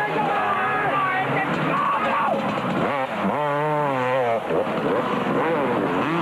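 250cc two-stroke motocross bikes revving on the track. About three seconds in, one bike comes close, its engine note rising and wavering for over a second before it drops away.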